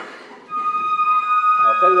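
Flute section holding a steady high D-sharp harmonic, sounded by fingering G-sharp and overblowing. It starts about half a second in, and a man's voice comes in near the end.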